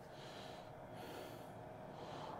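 Faint, steady rush of exhaust blowing out of a high-efficiency gas furnace's PVC exhaust vent fitted with an accelerator tip, the furnace firing on high. A faint steady tone runs under it.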